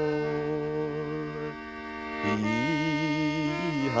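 English folk ballad accompaniment between sung verses: a sustained drone chord, then a melody line with vibrato entering about halfway through.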